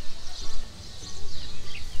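Soft background music with faint bird chirps over outdoor ambience.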